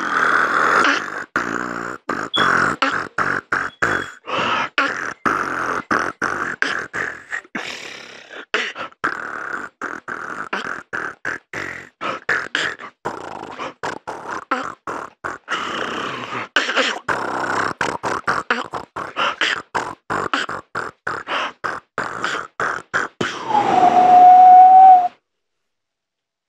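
Solo human beatboxing: a fast, dense stream of mouth percussion, with sharp chopped kick and snare sounds and hissing between them. Near the end comes one long held vocal tone, the loudest part, and then the routine stops abruptly.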